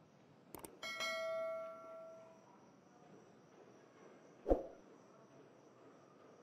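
A click followed by a single bright bell ding that rings out for about a second and a half: the sound effect of a YouTube subscribe-button animation. A single short thump about four and a half seconds in.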